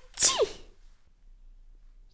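A woman's voice acting out a sneeze: the explosive end of a "ha-ha-tschi", a hissy burst with a falling pitch, about a quarter second in.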